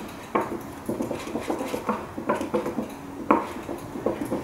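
Metal palette knife scraping and tapping against a paper plate while mixing thick acrylic paint, in irregular short strokes, the sharpest about three seconds in.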